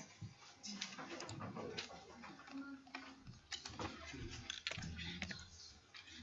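Faint, irregular clicks and taps, with a low murmur between them.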